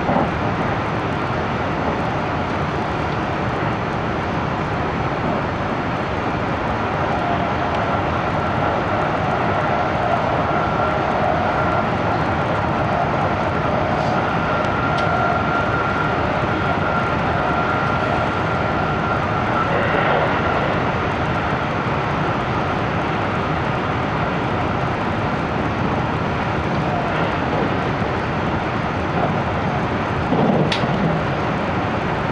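Interior running noise of a 373 series electric train heard from a passenger seat: a steady rumble of wheels on rail with a faint steady whine through the middle stretch.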